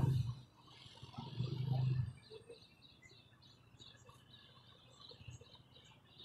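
Faint small birds chirping in short, quick, high calls, several a second, with a brief low hum about a second in.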